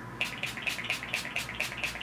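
Mario Badescu lavender facial spray misted from a pump bottle: a rapid run of about ten short, evenly spaced spritzes.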